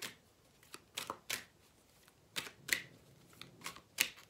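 A deck of cards being shuffled by hand: a series of about eight short, sharp card snaps at irregular intervals.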